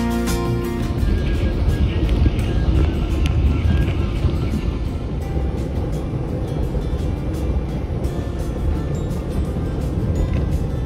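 Steady low rumble of the PeruRail Titicaca Train running, heard from on board, with light clicks and rattles from the wheels and carriage; slightly louder in the first few seconds.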